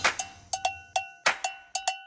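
Percussive music: a sparse, uneven beat of short metallic hits, cowbell-like, each ringing briefly at the same pitch, several a second.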